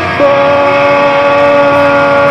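Live band music: a long held note, steady in pitch, that comes in a moment after the start and sustains.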